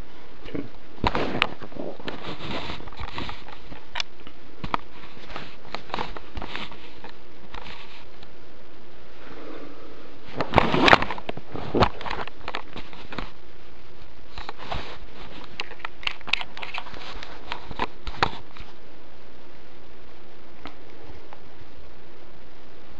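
Handling noise: rustling and scattered sharp clicks and knocks as the camera is moved about, over a steady hiss, with a louder cluster of knocks about halfway through.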